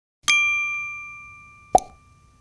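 A bell-like ding sound effect, as for a notification bell being clicked, that rings and fades away over about a second and a half. A short pop near the end.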